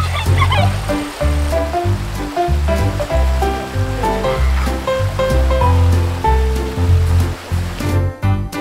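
Background music with a steady bass line and a melody, over the even rush of a mountain stream.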